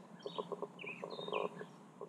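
Birds chirping in the background: several short, high chirps that slide down in pitch, scattered through the moment, over a faint steady hum.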